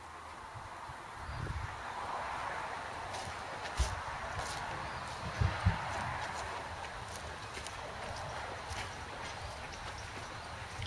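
Footsteps walking through dry grass, with a few soft low thuds around the middle, over a steady faint background noise.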